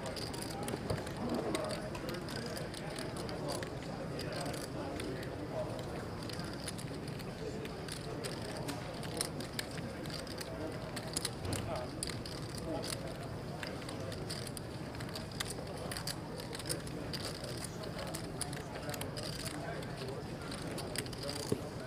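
Poker tournament room ambience: a steady murmur of many distant voices, with frequent short clicks of poker chips being handled.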